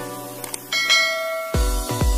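Two quick mouse-click sound effects, then a bright bell chime ringing out, over background music. A heavy electronic dance beat with a deep bass pulse comes in about a second and a half in.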